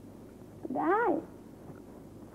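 Only speech: a single drawn-out spoken word, 'dai' ('okay'), its pitch rising then falling, over a quiet background hiss.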